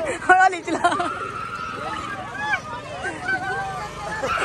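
People talking over the babble of a crowd.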